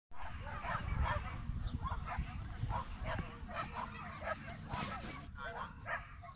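A dog barking repeatedly, roughly two barks a second.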